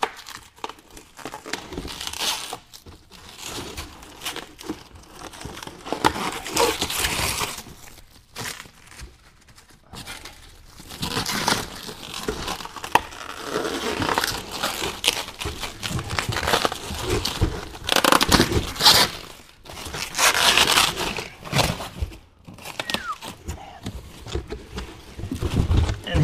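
Packing material being torn and crumpled as a boxed wheel is unpacked: irregular rustling, crinkling and ripping, with short pauses between bursts of handling.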